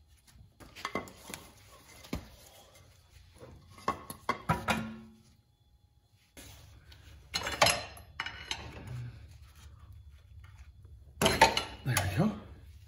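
Scattered metal clanks and clinks of a front CV drive axle and tools being handled as the axle is worked free of a 2002 Honda Accord's hub. The loudest clatter comes about two thirds of the way through and again near the end, with a short quiet gap in the middle.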